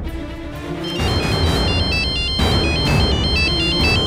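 Mobile phone ringtone: a quick electronic melody of high beeping notes that starts about a second in, over dramatic background music with low drum hits.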